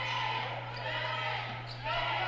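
A basketball being dribbled on a hardwood court, faint in the gym's room noise, over a steady low hum.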